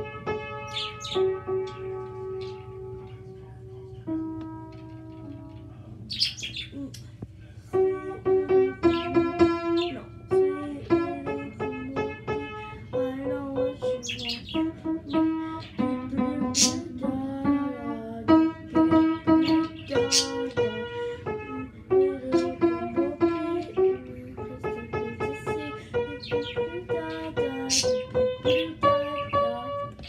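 Howard upright piano played note by note, a few slow held notes at first and then a quicker run of notes from about eight seconds in. Birds chirp briefly over it several times.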